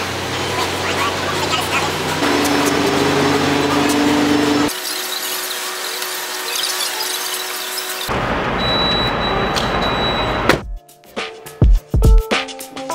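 Steady hum and background noise at a gas pump, broken by a couple of abrupt cuts. Near the end, loud music with a heavy drum beat starts.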